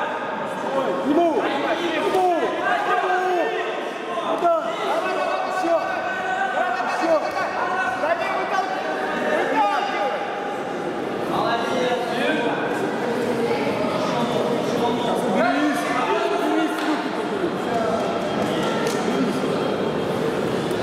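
Many voices shouting and calling out over one another, ringside shouting from spectators and corners at a kickboxing bout, echoing in a large hall. A few sharp knocks of blows are heard.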